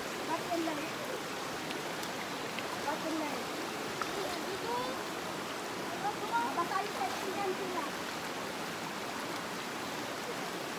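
Shallow river running over rocks, a steady rushing, with faint distant voices now and then.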